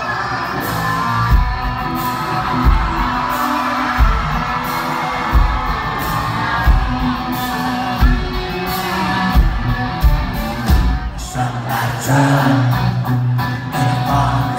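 Live country-rock band playing loud through a venue PA, with a heavy kick drum hit a little more than once a second and singing over the music. A fuller bass line comes in near the end.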